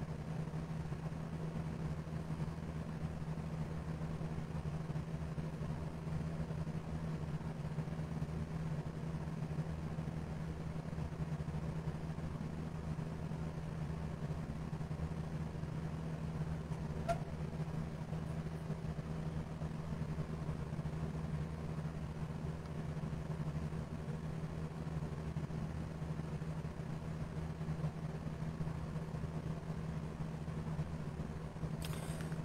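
A steady low hum runs on unchanged, with one brief faint tick about seventeen seconds in.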